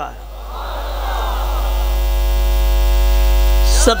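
Electrical mains hum with a buzz of many evenly spaced overtones from a public-address system, swelling steadily louder during a pause in speech.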